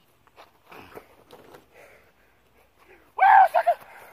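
Faint scuffing of movement on dry grass, then about three seconds in a man's loud, short shout.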